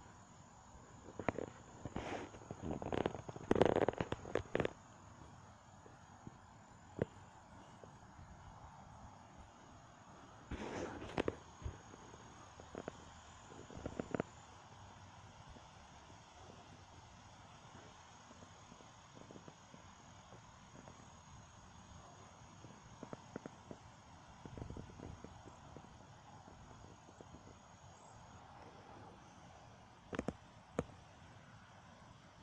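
A neighbour's dog barking in irregular bursts, the densest in the first few seconds and more around ten to fourteen seconds in and again past twenty seconds, over the steady hiss of a breeze.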